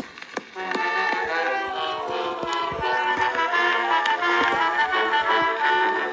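Instrumental introduction of an early 1900s acoustic record: a small orchestra playing a steady tune, thin-sounding with no deep bass, over the record's surface clicks and crackle.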